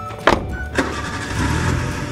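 A car engine being started: a sharp click about a quarter second in, then the engine running with a dense, steady noise from about a second in, over background music.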